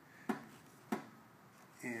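Two short sharp clicks, about half a second apart, as a stand-up paddle's handle is twisted in its carbon shaft to seat it in fresh epoxy.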